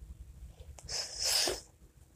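A single sneeze: a short hissing burst of breath about a second in, lasting under a second.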